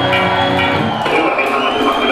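Live metal band music from the stage with the crowd cheering, while a high sustained tone dips and then rises again.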